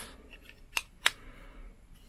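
Two sharp plastic clicks, the second louder, as a lens cover is snapped onto a plastic GoPro vlog case, one side and then the other.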